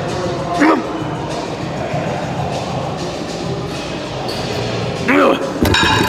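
A man's strained vocal groans while he pushes a set of preacher curls to muscular failure, one short groan about a second in and another about five seconds in, over steady background music. A brief clatter comes near the end.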